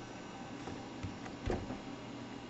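Low steady background noise with a soft knock about one and a half seconds in and a fainter one just before.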